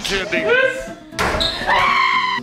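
Laughter and voices, with a small basketball striking once, sharply, a little over a second in.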